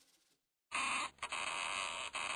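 A large sticker or tape being peeled off a surface, a rasping, crackling pull that starts about two-thirds of a second in and breaks off briefly just after a second before carrying on.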